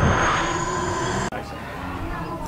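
Cinematic logo-reveal sound effect: a loud low rumbling whoosh with a thin rising whine above it, cutting off abruptly a little over a second in, after which a quieter low hum remains.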